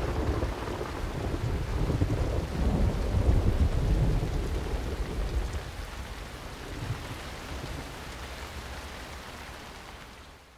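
Rain falling with a low rolling rumble of thunder that swells about three to four seconds in, then slowly fades out.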